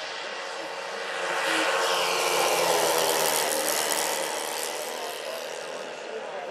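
Large RC scale-model DC-6B airliner passing low overhead, its four propeller motors growing louder, loudest in the middle, then fading as it climbs away.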